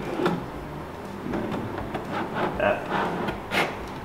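Wooden drawer being fitted into its cabinet opening and pushed in on metal soft-close drawer slides, giving a string of short clicks and knocks as it engages the slides.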